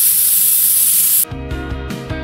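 Central Pneumatic airbrush spraying paint: a steady, loud hiss of air that cuts off suddenly just over a second in, where background music takes over.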